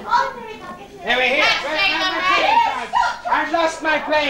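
Excited voices, children's among them, shouting and calling out over one another, loudest from about a second in.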